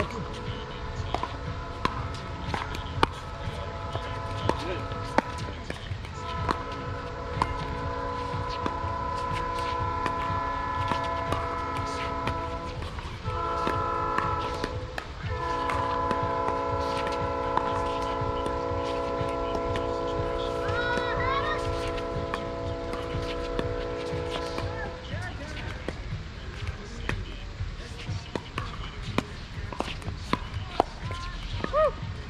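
A multi-chime train horn sounds a long held chord, then a short blast and another long blast. Sharp pops of pickleball paddles hitting the ball run throughout the rally.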